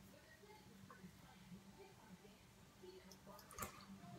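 Near silence: room tone with a faint steady hum and one faint click about three and a half seconds in.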